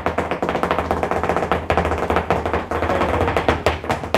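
Flamenco footwork (zapateado): rapid heel-and-toe taps of a dancer's shoes on the floor, over Spanish guitar playing.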